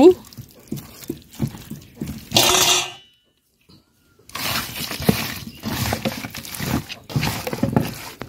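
Hands squishing and turning raw chicken pieces with spice paste, oil and potatoes in a steel bowl: irregular wet squelches and soft clicks, with a louder noisy burst a little past two seconds. The sound drops out completely for about a second around three seconds in, then the mixing goes on.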